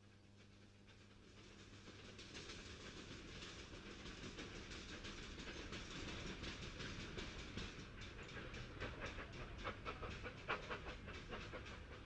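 Train running along railway tracks, fading in over the first couple of seconds into a steady rumble with a rhythmic clatter that grows more distinct in the second half.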